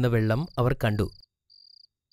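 A man speaking Malayalam for about the first second, over a steady high, pulsing cricket-like chirp that carries on alone in the pause after the voice stops.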